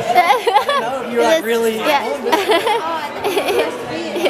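Chatter of several people talking over one another.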